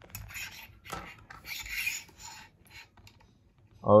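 Metal microscope-stand holder scraping and rubbing against the aluminium upright rod as it is handled and fitted, with a sharp click about a second in; the scraping stops after about two and a half seconds.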